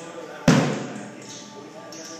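A single loud drum hit about half a second in, ringing out briefly over the quieter sound of the band in the room.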